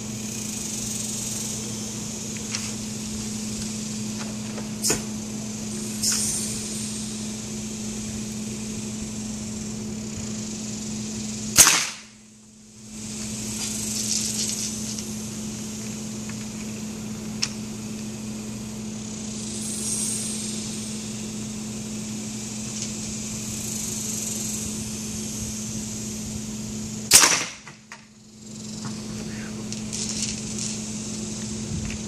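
Two loud shots from a 1-inch PVC pneumatic marble gun, line-fed with air at 130 psi, the first about twelve seconds in and the second near the end, with a few lighter clicks between. A steady mechanical hum runs underneath.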